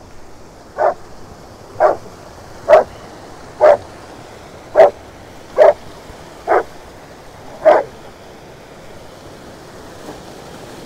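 A white shepherd dog barking eight times, about once a second, then stopping about two seconds before the end, over the steady rush of a small mountain creek.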